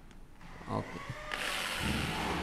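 Corded electric drill driving a screw into a WPC (wood-plastic composite) board. Quiet at first, then the drill starts about a second and a half in and runs steadily as the screw goes in.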